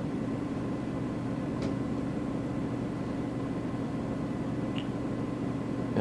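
Steady low hum of an overhead projector's cooling fan, with a couple of faint ticks from a marker on the transparency.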